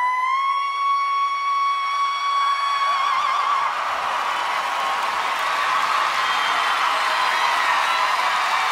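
A woman's voice holds a long, high belted note that breaks into vibrato about three and a half seconds in, as crowd cheering and applause swells and takes over.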